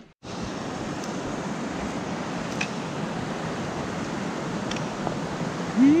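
Steady rush of a fast mountain creek running over rocks, starting abruptly just after the beginning.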